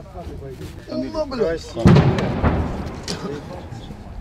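A single heavy blast about two seconds in, a sudden boom that echoes and dies away over about a second, with a second, weaker surge half a second after it.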